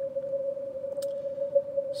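Yaesu FTdx5000MP receiver audio through its super-narrow audio peak filter: a weak voice station and band noise squeezed into a steady, slightly wavering whistle-like tone a little above 500 Hz. One short click about a second in.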